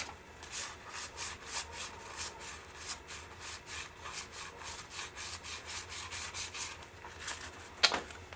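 Cardboard baseball cards (1987 Donruss Opening Day) flicked through by hand, each card slid off the stack behind the next in a quick, even run of light swishes, about three or four a second. A sharper click comes just before the end.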